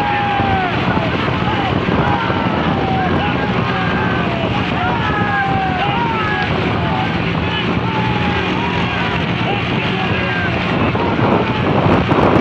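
Motorcycle engines running steadily with wind rushing over the microphone, under many men's drawn-out shouts and yells that cheer on the racing horse carts. The shouting grows louder near the end.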